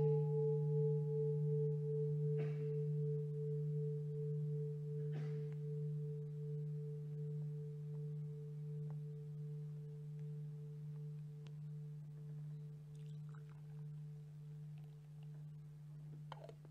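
Large bowl-shaped meditation bell ringing out after a single strike, a deep steady tone with a higher tone above it that wavers slowly, the whole ring fading gradually. It is the bell of mindfulness, sounded as a pause to stop and breathe.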